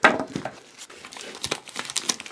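Crinkly black wrapper being pulled open by hand: a sharp sound right at the start, then irregular crinkling and crackling with a few sharp snaps.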